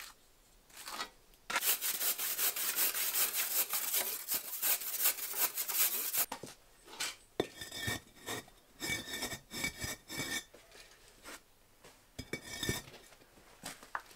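Trowel scraping and smearing wet mortar over a kiln's brick wall, a dense rasping run of about five seconds. Then bricks are set into the wall, knocking and grating against brick and mortar with a few short ringing clinks.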